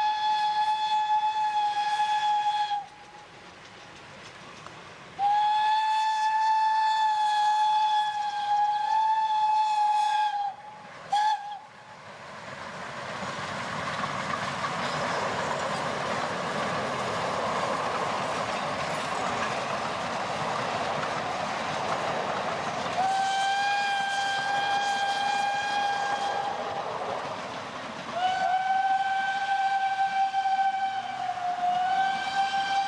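Narrow-gauge steam locomotive whistles blowing long steady blasts: one of about three seconds, one of about five, two short toots just after, then more long blasts from about 23 s and again near the end. From about 12 s the double-headed steam train passes, a rushing noise that swells and fades under the later whistles.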